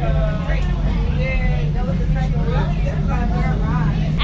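Several people talking at once, their chatter not quite clear, over a steady low rumble.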